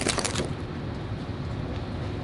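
A steel rocker knife cracking through the crisp crust of a baked pizza, a short run of crackles in the first half-second, then a steady low room rumble.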